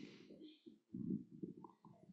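Faint low rumbling and rubbing from a handheld microphone being moved and lowered, in irregular bursts loudest about a second in.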